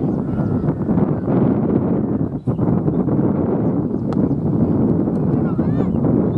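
Steady low rushing noise on the microphone with indistinct voices, and a few short rising-and-falling chirps near the end.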